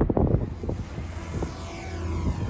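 Small camera drone's propellers whining as it lifts off from a hand launch, the whine falling in pitch near the end, over wind buffeting the microphone.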